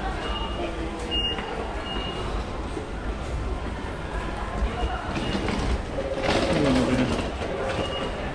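Busy subway station concourse ambience: a steady hubbub of footsteps and passing voices over a low rumble. Short high electronic beeps sound several times, and a louder voice comes through a little past the middle.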